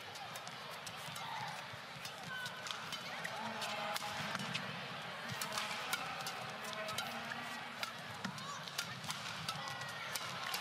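Badminton rally: sharp racket strikes on the shuttlecock and short shoe squeaks on the court mat, over a steady hall murmur.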